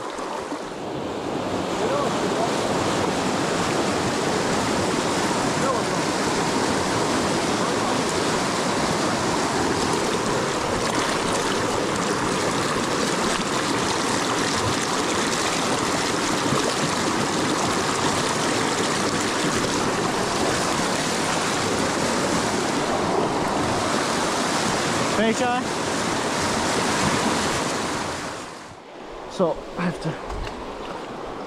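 Fast, shallow stream water rushing and splashing right against the microphone, a loud steady hiss of churning water. It falls away sharply just before the end.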